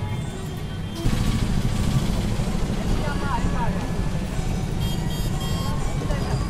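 Roadside noise from traffic, a heavy low rumble that jumps louder about a second in, with faint voices and snatches of music behind it.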